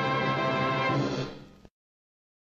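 Orchestral film score holding one final chord, which fades and stops about a second and a half in.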